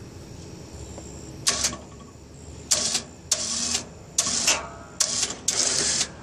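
Small electric winch on a riding-mower snow plow, run in about seven short spurts with pauses between, winding in its cable to raise the plow blade.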